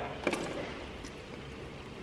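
Car engine oil starting to drain from the sump into a plastic jug as the drain plug is backed out by hand: a few sharp clicks a quarter second in and another about a second in, over a steady faint pour.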